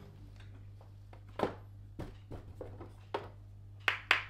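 Plastic glue bottles and containers being handled and taken out of a freezer: scattered light knocks and clicks, the sharpest about a second and a half in, then a quicker clatter near the end, over a faint low hum.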